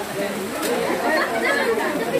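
Several people talking at once: overlapping conversational chatter of a small crowd.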